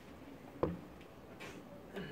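A pause in a man's speech: faint room tone with one short click about half a second in, followed by a few fainter small noises.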